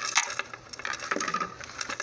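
Metal jewelry chain and pendant clinking, with small irregular handling clicks and taps as the necklace is moved against its box, the loudest just after the start.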